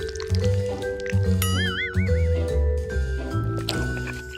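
Light background music with a steady bass line. A short wobbling, warbling tone comes in about one and a half seconds in and fades out about a second later.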